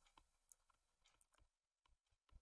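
Near silence, with a few faint short clicks of a stylus writing on a tablet.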